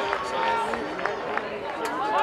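Several voices of spectators and players calling and shouting at once around a rugby league field, with a few short sharp clicks among them.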